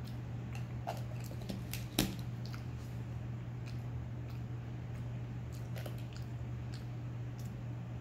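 A person chewing peanuts with the mouth closed: irregular small crunches and clicks, the sharpest about two seconds in, over a steady low hum.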